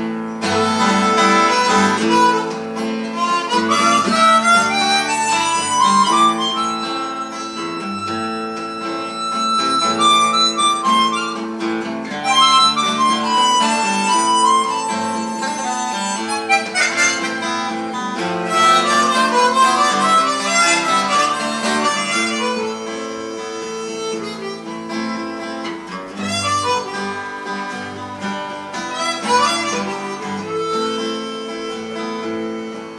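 Harmonica playing an instrumental solo over an acoustic guitar accompaniment, its phrases rising and falling, with a long held high note about seven seconds in.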